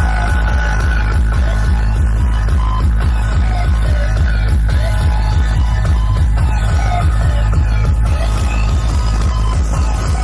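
Loud electronic dance music played through a large DJ sound system, with a heavy, rapidly pulsing bass that is the loudest thing throughout.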